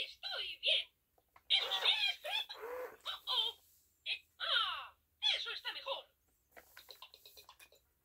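Talking Mickey Mouse plush toy (Spanish 'Mickey Baila y Baila') speaking Spanish phrases in a high cartoon voice with giggles, running on weak batteries. Near the end comes a quick run of small clicks.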